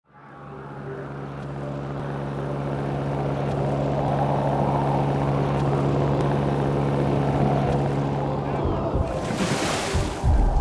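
Biplane's propeller engine droning at a steady pitch with rushing wind, growing louder from silence over the first few seconds. Near the end the drone stops and a short loud rushing noise follows.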